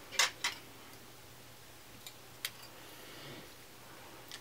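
Small sharp clicks from a hair clip being worked while hair is sectioned up: two quick loud clicks right at the start, then two fainter ones about two seconds in.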